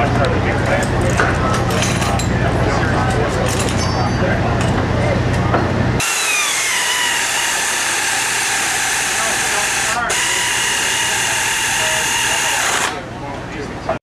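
Pit-work noise: a steady low machine hum with short clicks and clatter of hand tools on the engine, then, after a sudden change, a high hiss with a whine that falls in pitch and steady high tones, with voices in the background.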